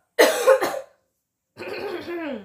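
A young woman coughing twice in quick succession, then clearing her throat near the end with a rough sound that drops in pitch.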